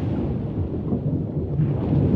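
Low, steady rumble of moving water, a churning deep noise with no distinct events.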